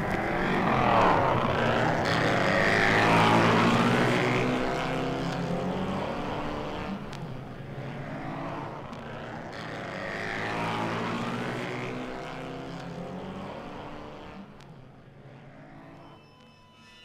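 Car engine sound effect: a vehicle passes by twice, its pitch sweeping up and down each time over a steady low engine note, growing fainter toward the end.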